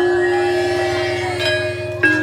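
Gamelan bronze percussion ringing. Struck metal notes hang over a deep, sustained gong-like tone and slowly fade, with a fresh stroke about one and a half seconds in.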